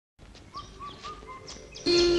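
Faint bird chirps: four short calls about a quarter second apart, over a light background hiss. Just before the end, loud music starts suddenly.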